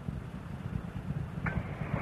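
A low, rough rumble with a fine crackle, picked up outdoors. About one and a half seconds in, a burst of radio-channel hiss cuts in ahead of a radio call.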